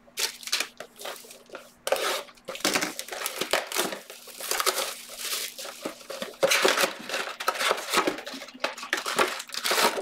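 Plastic shrink-wrap being torn and crinkled off a cardboard trading-card hobby box: continuous rustling with many sharp crackles.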